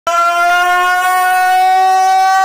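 A man's voice holding one long, loud shouted note over a PA microphone, its pitch creeping slightly upward.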